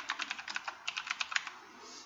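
Fast typing on a computer keyboard, a quick run of keystrokes that stops about one and a half seconds in.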